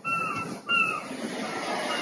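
A high whining animal call, heard twice, each call short and falling slightly in pitch, followed by fainter similar notes over a steady background hum.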